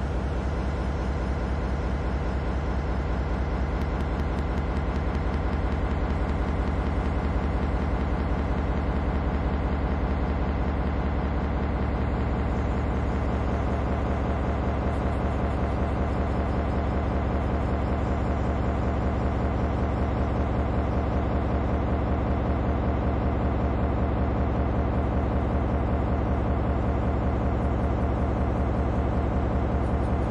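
A steady, low mechanical drone with a fine, even pulse, running unchanged throughout.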